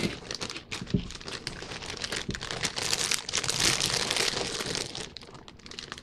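Plastic chip bag crinkling and rustling as it is handled and shaken, with dense crackling that is loudest around the middle.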